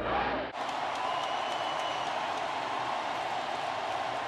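Large stadium crowd noise, a steady dense roar that cuts in suddenly about half a second in. Before it comes a brief stretch of old film soundtrack with a low hum.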